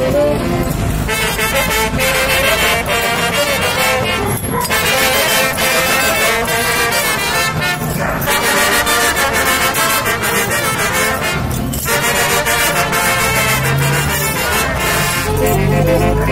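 Traditional Mexican dance music played continuously by a brass band.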